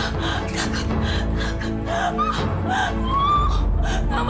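A woman gasping and sobbing in distress, breaking into wavering wailing cries in the second half, over sustained dramatic background music.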